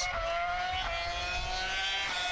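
Formula 1 car engine held at high revs: one steady high note that rises slightly early on and then holds.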